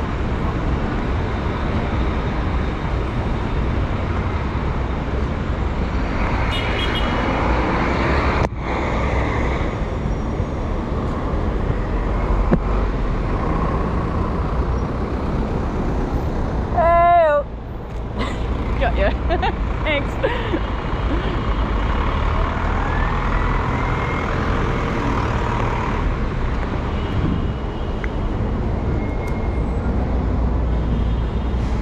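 City street traffic: a steady rumble of vehicle engines and tyres, with a loud, brief wavering tone about seventeen seconds in.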